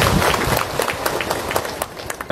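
An audience clapping: many irregular sharp claps over crowd noise, dying down near the end.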